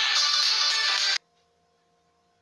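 Music playing loud, cutting off abruptly a little over a second in as the video's playback is paused, leaving only a faint steady hum.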